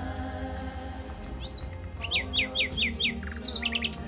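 A small songbird calling: one rising whistle, then a quick series of five short falling notes at about five a second, and a few faster, higher notes near the end, over soft background music.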